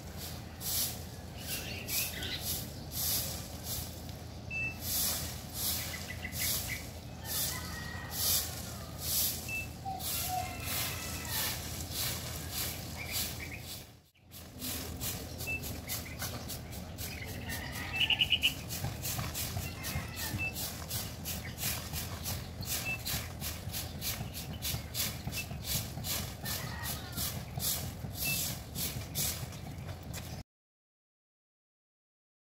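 Stick broom sweeping leaves and grit across a concrete pavement in steady rhythmic strokes, about two to three a second. A brief high chirp sounds a little past halfway.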